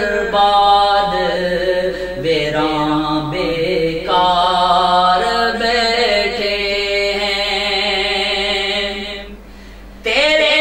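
A man's voice singing a Sufi devotional poem (kalam) in long, drawn-out notes, stopping shortly before the end.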